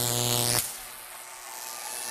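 A man's voice through the arena PA drawing out a long, buzzing 'zzz' at the end of the word 'because', cut off sharply about half a second in, followed by quieter crowd noise in the arena.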